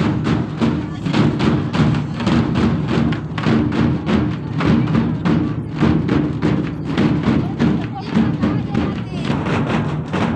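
A fast, steady drum beat with music and a crowd's voices over it.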